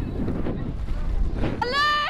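Low rumble of wind on the microphone, then a drawn-out shouted call from a spectator on the bank, starting near the end.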